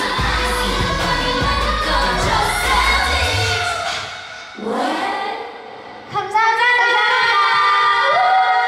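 A K-pop girl group singing live into handheld microphones over the dance-pop backing track of their song. About four seconds in, the beat drops out with a falling swoosh, and the women's voices carry on alone in long held notes.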